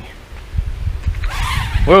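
Gusty wind rumbling on the microphone. About 1.3 seconds in, a micro quadcopter's brushed motors spin up with a thin whine as it is hand-tossed into the air, and a man exclaims right at the end.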